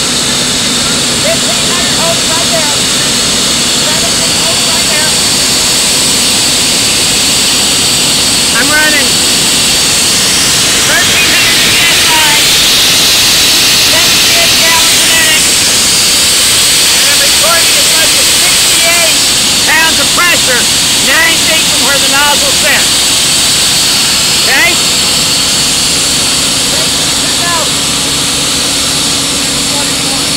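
High-pressure water jet from a KEG Torpedo sewer-cleaning nozzle blasting through a metal pipe at about 2,000 PSI, a loud steady hiss of spray over the running engine and water pump of a Vacall combination sewer cleaner. The hiss grows brighter about eleven seconds in and stays up for several seconds.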